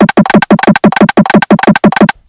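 A Latin pop drum loop played from a software sampler and triggered by a high C key, so it plays back faster and higher in pitch than the original: a rapid, even run of drum hits, about eight or nine a second.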